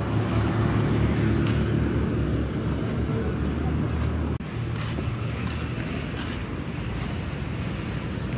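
Road traffic with a motor vehicle engine running steadily close by, a low even hum, with a brief drop-out about halfway through.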